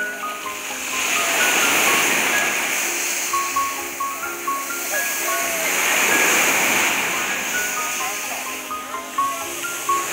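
Sea surf breaking on the shore, the wash swelling and fading twice, under background music of slow held notes, with voices now and then.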